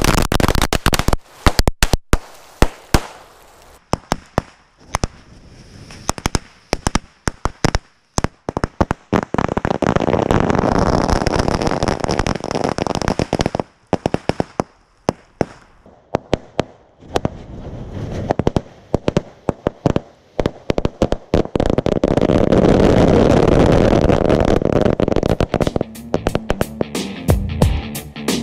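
Hundreds of small Chinese D-Böller firecrackers going off in a heap. It starts with a dense rapid string of bangs, thins to irregular single bangs, and twice builds again into near-continuous crackling, scattered bangs following.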